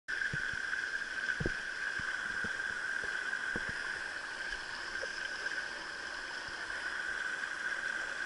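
Water running steadily down an open water-slide channel, a continuous rushing, with a few faint knocks in the first few seconds.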